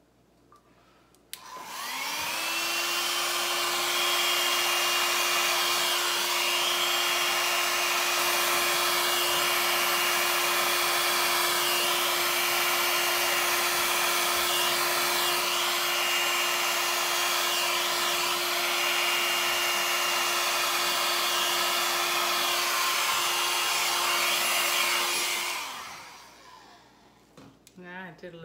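Hair dryer blowing wet acrylic pouring paint outward from the centre of a canvas (bloom technique). It starts about two seconds in with a rising whine, runs steadily, and winds down near the end.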